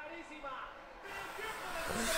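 Faint voice low in the mix, much quieter than the shouting around it.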